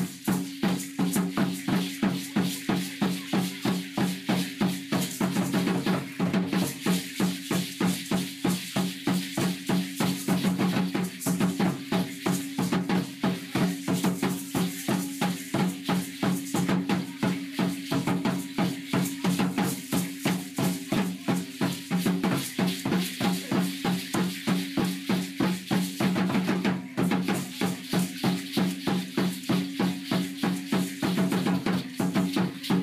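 Aztec dance drumming: a drum beating a fast, steady rhythm, with rattles shaking along with it the whole time.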